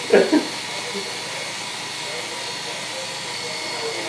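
Corded Oster electric hair clipper running steadily while cutting a man's hair, after a brief laugh at the very start.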